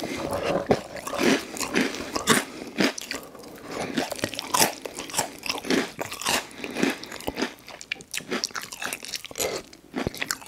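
Close-miked chewing of a mouthful of spicy instant noodles and Hot Cheetos, with many irregular crisp crunches.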